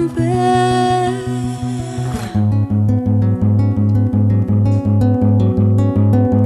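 Nylon-string classical guitar fingerpicked in a steady, repeating pattern of bass and treble notes. A wordless sung note is held for about a second at the start.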